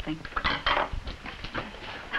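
Clatter of dishes and cutlery on a table as a drink is spilled, with a short burst of noisy clatter about half a second in.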